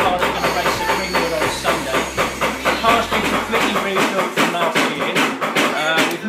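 A man talking, with a low steady hum underneath that fades out about four seconds in.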